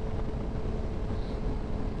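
Suzuki GSX-R sportbike running at a steady cruise, a low, even engine and road rumble with no revving, picked up by a helmet-mounted camera.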